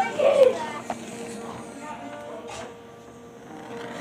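A handheld blowtorch flame hissing faintly, with a brief voice in the first half-second and a faint steady tone underneath from about a second in.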